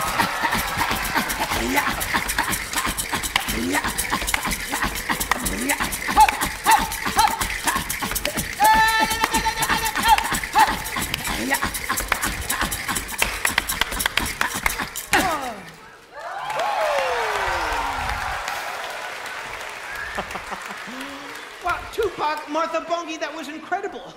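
Fast rhythmic body percussion of hand claps and slaps mixed with Zulu tongue clicks made with the mouth, stopping suddenly about fifteen seconds in. Audience applause and cheering follow and fade away.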